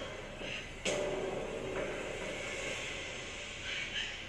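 A horror film's sound effect: a sudden hit about a second in, followed by a sustained noisy swell that slowly fades.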